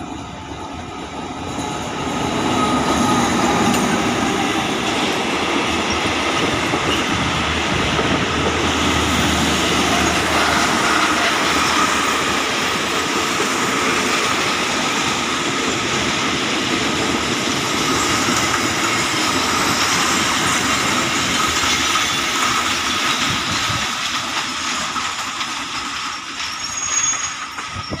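A diesel-hauled State Railway of Thailand passenger train rolls past close by on the adjacent track, its coaches' wheels rattling over the rails with a high squeal. It swells over the first few seconds, holds steady, and eases off near the end as the train slows into the station.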